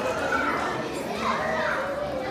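Young children's voices chattering at once, several high voices overlapping.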